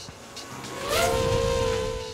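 Racing quadcopter's electric motors and propellers whining, over a low rushing rumble. The pitch rises about a second in and then holds steady.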